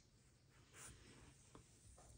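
Near silence, with faint handling of paper sticker sheets: a soft brush a little under a second in and a faint tick later.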